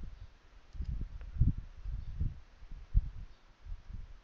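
Faint, scattered low thumps and bumps, three of them louder than the rest, with a couple of soft clicks among them.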